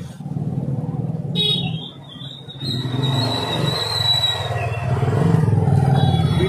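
Street traffic: a motor vehicle engine, likely a motorcycle, running close by with a steady low rumble. A high, thin tone enters about a second and a half in, dips slightly and holds for nearly three seconds before stopping.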